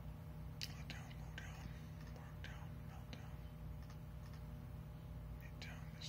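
A man whispering softly under his breath, a few faint hissy sounds, over a steady low hum.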